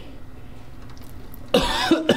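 A man breaks into a sudden coughing laugh about one and a half seconds in, letting out a held breath against the strong smell of vinegar fumes.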